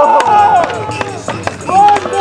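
Several young men hollering in long, drawn-out calls, celebrating a landed skateboard trick, with a few sharp knocks among them.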